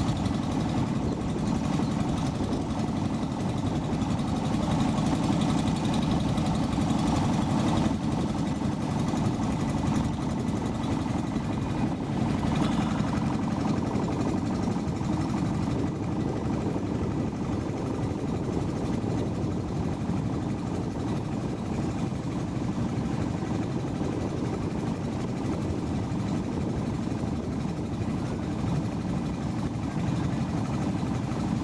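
A boat's engine running steadily, a low, even drone with no change in pitch.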